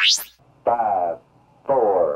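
Electronic synthesizer jingle: a quick upward sweep, then pitched synth tones that slide downward, about one a second.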